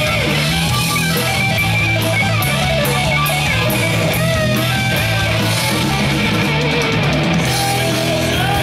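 Live rock band playing a heavy, distorted riff on electric guitars over bass guitar and drum kit, with cymbals struck about three times a second.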